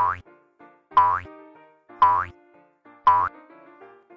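Background music: a light keyboard melody with four loud accents about a second apart. Each accent has a pitch that sweeps upward and a low thump beneath it.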